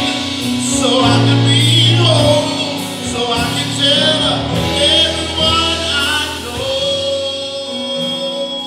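Gospel singing with instrumental accompaniment: voices with vibrato over sustained low keyboard or bass notes, ending in a long held note.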